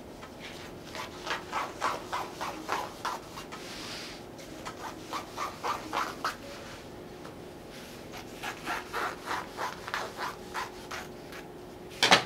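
Fabric scissors snipping through Ankara cotton print fabric: a run of short cuts about two or three a second, a brief lull, then a second run of cuts.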